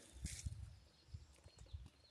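Faint outdoor quiet with a brief rustle and soft knocks about a quarter second in, then a few light ticks: the sounds of someone moving on foot through grass and weeds.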